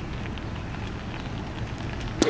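Steady outdoor background noise: an even hiss over a low rumble, with no distinct events.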